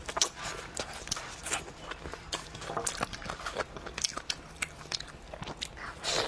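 Close-miked eating: a person biting and chewing skin and meat off a goat leg bone, with frequent, irregular wet smacking clicks.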